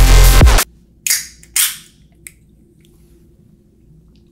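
Electronic music cuts off suddenly, then an aluminium can of carbonated energy drink is cracked open: two short hisses of escaping gas, each sharp at the start and fading, followed by a small click.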